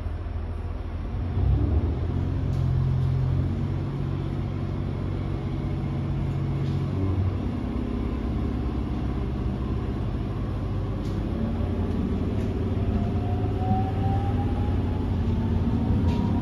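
Running sound heard inside a JR East GV-E400 series diesel-electric railcar. The diesel engine's low rumble steps up about a second in as it takes power, and in the second half a whine from the traction motors rises steadily in pitch as the train gathers speed.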